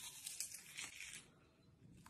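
Faint crunching and crackling of a bite through the chocolate-and-sprinkle coating of a candy apple on a stick, a quick run of crisp crunches in about the first second.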